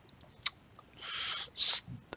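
A single click about half a second in, a mouse click advancing a slide build. Then a soft breath in and a short hiss just before speech resumes.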